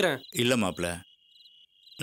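A cricket's steady, high-pitched trill. In the first second it lies under a man's brief low voice, and after that it is heard almost alone.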